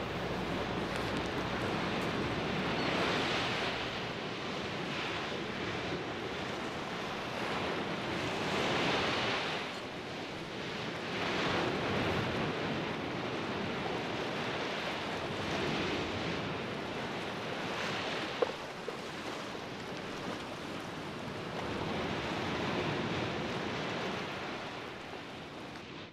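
Sea waves washing against a harbour wall: a steady rush that swells and fades every few seconds. A brief tap sounds about two-thirds of the way through.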